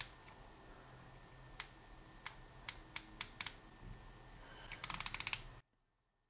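Wera Kraftform Kompakt ratcheting screwdriver's fine-pitched ratchet clicking as the handle is worked back against the pawl: a handful of separate clicks, then a quick run of fine clicks near the end that stops abruptly.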